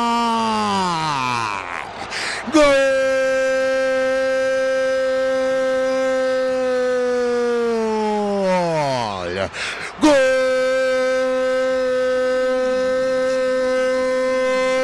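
A football radio commentator's long drawn-out goal cry, 'gooool', celebrating a converted penalty. It comes as three long held notes, each sagging in pitch at its end, with a quick breath between them about two seconds in and again about ten seconds in.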